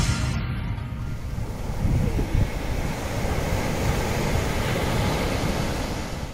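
Ocean surf washing onto a beach, a steady rush of breaking waves with wind on the microphone. Music fades out in the first second.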